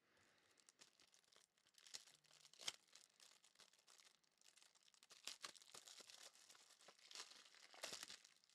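Faint crinkling and rustling of trading cards and their plastic packaging being handled, with scattered small ticks and a slightly louder rustle a little under three seconds in.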